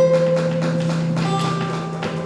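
An ensemble of guitars playing a slow ambient piece: single picked notes ring out one after another over a long-held low note.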